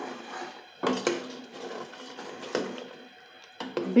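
Metal ladle stirring thick gravy in a pressure cooker pot, with a few scrapes and knocks against the pot: one about a second in, one past the middle and one near the end.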